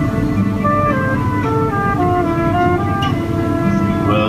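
Folk band's instrumental break between sung verses of a whaling song: a melody of held notes stepping up and down over low accompaniment, with a steady background hum.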